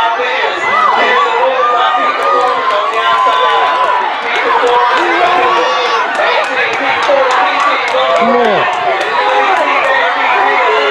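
Crowd of spectators shouting and cheering a youth relay race, many voices overlapping continuously.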